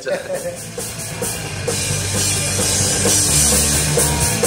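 Punk rock band playing, with a drum kit driving the beat. The sound builds up over the first couple of seconds and then runs at full level.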